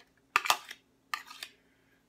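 A metal spoon knocking twice against a metal baking pan, then a short scrape of the spoon through canned corn and green beans as they are spread in the pan.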